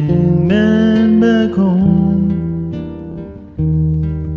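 A song with strummed acoustic guitar and a voice singing long, gliding notes.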